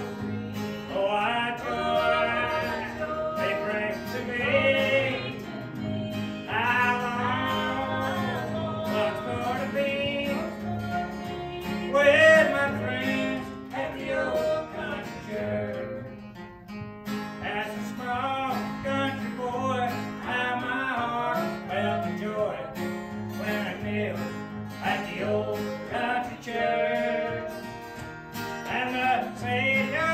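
A song sung to a strummed acoustic guitar, a man's voice leading, in phrases of a few seconds with brief breaths between them.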